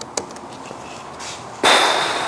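A computer-keyboard keystroke or two, then about a second and a half in a sudden loud burst of noise with a thin high tone in it, fading slowly.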